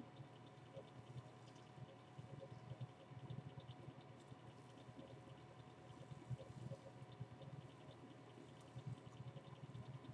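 Faint, irregular squishing and rustling of hands working curl cream through wet hair, over a faint steady hum.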